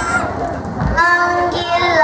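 Children singing through a microphone and PA, led by a girl's voice holding long sung notes. The singing breaks off briefly a third of a second in, with a low thump just before it resumes about a second in.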